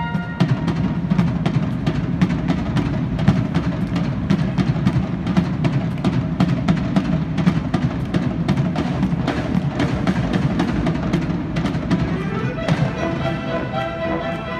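High school marching band playing live: a held brass chord gives way, under half a second in, to a driving drum-led passage of quick, evenly spaced drum hits over low brass. About twelve and a half seconds in, a rising run leads into sustained brass notes.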